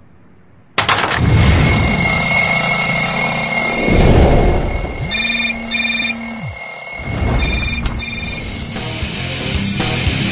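Loud music starts abruptly about a second in. About five seconds in, a mobile phone alarm rings in two short bursts, then twice more, more faintly, about two seconds later.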